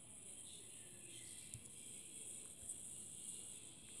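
Near silence: faint room tone, a steady hiss with a thin high-pitched tone.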